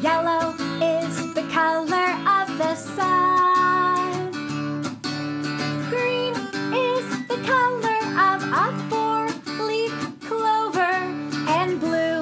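A woman singing a children's song while strumming a Taylor acoustic guitar in a steady rhythm.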